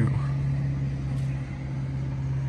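A steady low machine hum, one unchanging drone like an idling motor.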